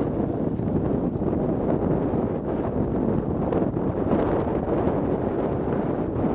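Strong wind buffeting the camera microphone: a steady low rumble with no break.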